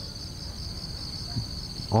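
Insects in the grass keeping up a steady, high-pitched pulsing trill.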